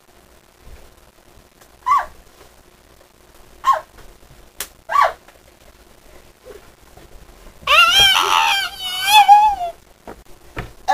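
A person's voice giving three short, high yelps over the first half, then a long, loud scream that wavers in pitch for about two seconds near the end.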